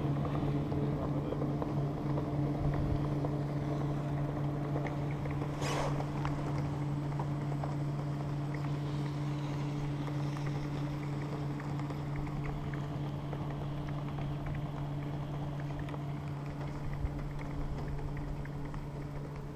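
Garaventa fixed-grip chairlift in motion, heard from a riding chair: a steady low hum with wind noise that slowly fades as the chair moves up the line, and a brief whoosh about six seconds in.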